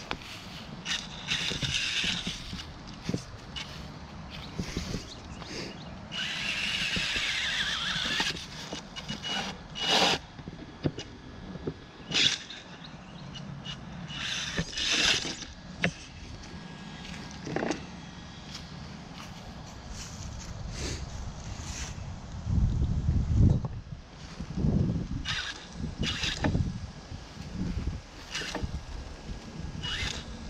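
Vaterra Twin Hammers RC rock racer crawling over wooden boards: its brushless motor whines in short bursts of throttle, mixed with knocks and scrapes of tyres and chassis on the wood. A few heavier low thumps come about three-quarters of the way through.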